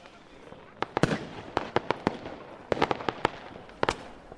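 Fireworks-like crackle sound effect for a logo intro: a faint hiss broken by about a dozen sharp pops and cracks at irregular intervals, bunched in little clusters.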